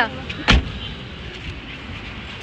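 A car door shutting once with a single heavy thump about half a second in.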